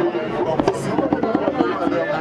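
Crowd of many voices talking over one another, with a couple of sharp clicks or knocks about two-thirds of a second in.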